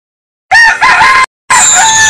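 A rooster crowing once, starting about half a second in and cut off sharply. After a brief gap, near the end, music with high bird-like chirps begins.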